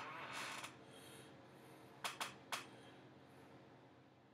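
A quiet room: a short soft rush of noise at the start, then three sharp clicks in quick succession about two seconds in.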